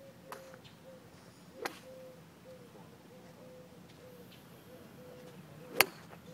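Sharp clicks of golf clubs striking balls on a driving range: a light one just after the start, a stronger one a little later, and a much louder one near the end. Under them a faint short chirp repeats about two or three times a second.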